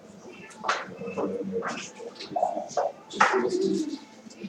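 Backgammon dice and checkers clicking and clattering on the board in irregular, scattered strokes.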